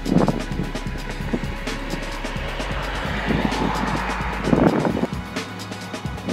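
Background music with a steady beat, with road-vehicle noise under it that swells up and fades away in the middle, like a car passing.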